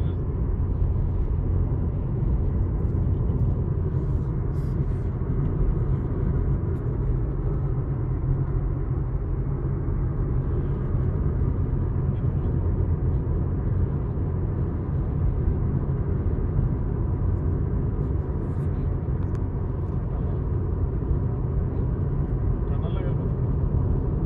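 Steady road rumble heard inside the cabin of a car driving at motorway speed, with tyre noise on the asphalt and engine drone.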